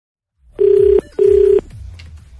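Telephone ringback tone heard down the line: one double ring, two short burrs of a low steady tone with a brief gap between them, the sign that the called phone is ringing at the other end.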